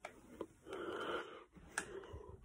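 A person's breathy, wheezy laugh close to the microphone, with a few sharp clicks, one near the start, one about half a second in and the loudest near the end.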